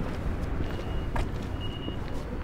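Outdoor street ambience: a steady low rumble with a single sharp tap about a second in and a faint, thin high tone coming and going in the second half.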